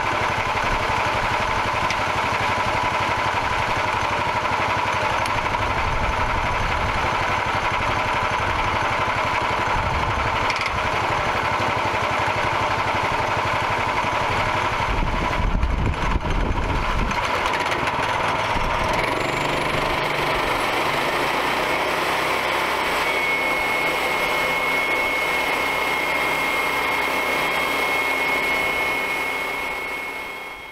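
Portable bandsaw sawmill's small gasoline engine running steadily while the blade cuts a log into boards. The running tone shifts about two-thirds of the way through and a steady high whine follows, then the sound fades out at the very end.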